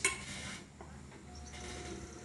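A single sharp click, then faint handling noise at a potter's wheel.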